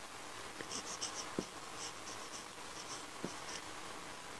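Marker pen writing on a whiteboard: short, high squeaking strokes as letters are formed, with two light taps of the tip on the board.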